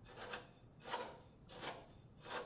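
Metal tamping rod stabbed repeatedly into coarse aggregate (gravel) in a metal unit-weight measure. It makes a faint gritty crunch with each stroke, three even strokes about 0.7 s apart. This is rodding the first layer to consolidate it.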